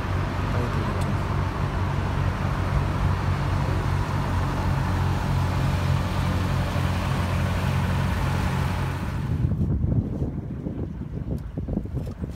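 Ferry's engine droning steadily, with water and wind noise, on a river crossing; it cuts off abruptly about three-quarters of the way through, leaving a quieter sound with a few sharp clicks.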